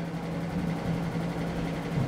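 Small electric desk fan running: a steady hum and hiss with a low, even tone.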